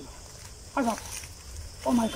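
A man's voice giving short wordless cries that fall in pitch, twice, about a second apart.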